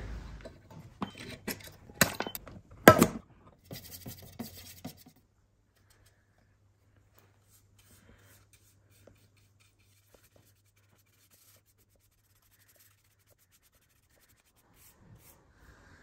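A metal finish tin being levered open with a small tool: a few clicks and scrapes, with one sharp click about three seconds in. Then a bristle brush scratches briefly over bare oak as the hard wax oil is brushed on, and near silence follows.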